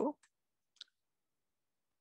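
A single faint click of a computer mouse or key, advancing a presentation slide, just under a second in, with near silence around it.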